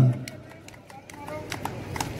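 An announcer's voice stops right at the start, leaving a quiet outdoor background with a few faint, scattered clicks.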